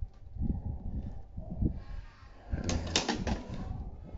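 Hands handling the red plastic belt strap and buckle pieces of a DX Swordriver toy belt: irregular low knocks and rustles of plastic, with a sharper plastic clatter about three seconds in.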